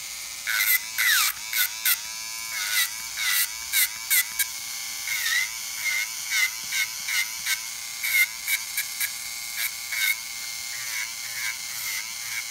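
Nail Master electric nail drill running with a blue-band ceramic corn-cut bit, grinding gel polish off a fingernail. A steady high whine dips in pitch each time the bit bears down on the nail, with short rasps of grinding several times a second.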